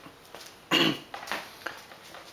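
A man coughing once, a short, sudden cough, followed by a quieter cough or throat-clear about half a second later.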